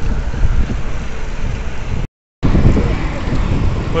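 Wind rushing over the microphone of a camera carried on a moving bicycle, a steady low rumble that drops out completely for a moment just past halfway.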